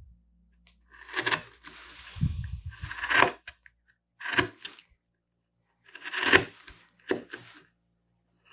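A #7, 6 mm carving gouge, pushed by hand, slicing into mahogany while undercutting an edge. It makes about five short, crisp cutting scrapes with pauses between them, the loudest about three seconds in and again about six seconds in.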